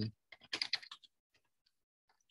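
Typing on a computer keyboard: a quick run of keystrokes in the first second, then a few faint taps.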